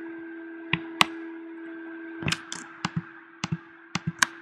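Sharp clicks of a computer being operated, about seven at uneven intervals with several close together near the end, over a steady low hum.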